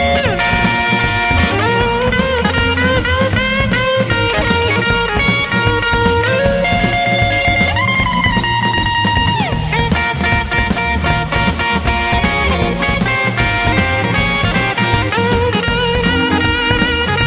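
Instrumental break of a blues band recording: a lead electric guitar solo with bent notes that slide up and hold, over bass and a steady drum beat.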